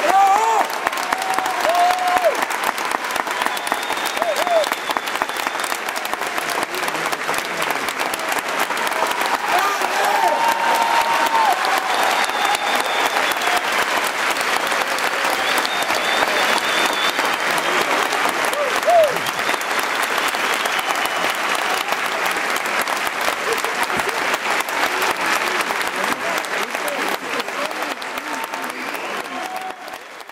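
A theatre audience applauding steadily, with voices shouting from the crowd now and then over the clapping. The applause dies away near the end.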